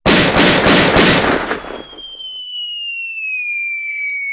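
Cartoon pistol sound effect fired rapidly into the air, about four shots a second for a second and a half, dying away. Then a clear whistle falls steadily in pitch, the cartoon sound of something dropping from the sky.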